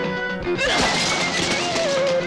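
Film background score of sustained tones and a sliding melody line, with a sudden crash-like hit effect about half a second in.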